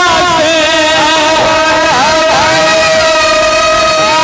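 A man singing a Bhojpuri devotional sumiran through a PA, holding long drawn-out notes that waver and glide in pitch over a steady accompanying tone.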